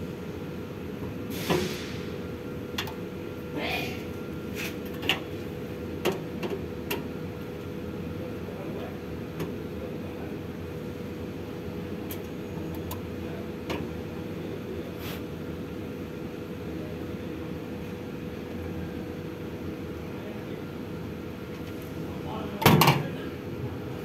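Screwdriver work on a fuel dispenser's sheet-metal cabinet: scattered light clicks and knocks from the screwdriver, screws and panel, with a louder clatter near the end, over a steady background hum.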